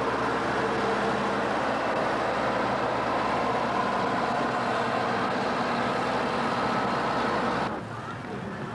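Heavy road-construction machinery's engine running steadily during asphalt paving, with a constant hum that cuts off suddenly near the end.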